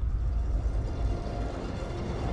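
Opening of a film trailer's soundtrack: a deep, steady low rumble with faint music above it.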